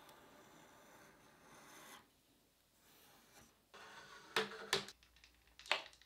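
Quiet, faint scraping of a chisel paring dried paint off the edge of a painted plate, with a few short, sharper scrapes about four to five seconds in.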